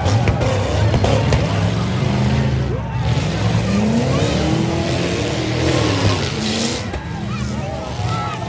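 Demolition derby trucks' engines running hard and revving, rising and falling in pitch as they push into each other on dirt. A few sharp knocks of collisions come near the start.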